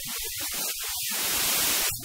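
A rush of static-like hiss that swells over the second half and cuts off sharply just before the end, over faint music.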